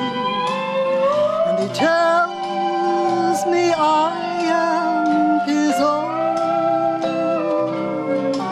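A woman singing a country gospel hymn over an instrumental backing, holding long notes between short pitch bends.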